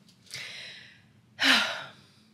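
A woman sighing: a soft breathy exhale, then a louder sigh about a second and a half in that begins with a brief sound of voice and trails off.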